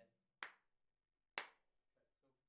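Two sharp hand claps about a second apart, each short with a quick decay, in a small quiet room.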